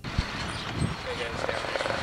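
Outdoor street ambience: a steady rumble of traffic with faint voices, and a sharp knock just after the start.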